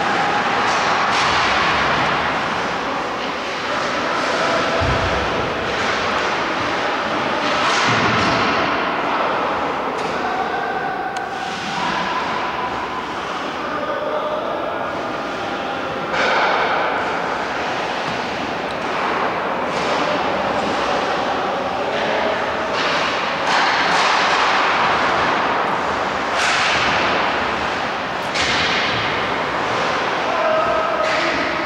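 Ice hockey game in play: skates scraping the ice and sticks and puck clacking in a steady run of sharp knocks, with a heavy thud about five seconds in.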